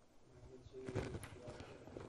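A faint, distant voice answering with a single word, "magnitude", about a second in.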